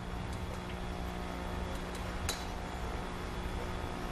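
Quiet venue ambience at a billiards table: a steady low hum with a few faint ticks, and one sharp clink a little over two seconds in.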